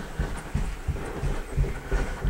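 Footsteps going down carpeted stairs: a quick, uneven run of dull, muffled thuds, a few per second.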